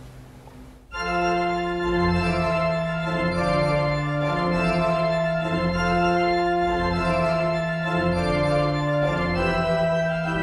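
A 200-year-old Bishop & Son pipe organ starting to play about a second in: loud, full chords over a held pedal bass, changing every second or so, in a dry church acoustic with little echo.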